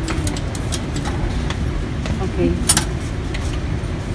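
Coin being fed into a ticket vending machine's coin slot: a few light clicks, then one sharp clack a little under three seconds in, over a steady low rumble.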